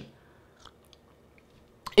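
Faint sips and swallows of water from a glass, with a few soft mouth clicks.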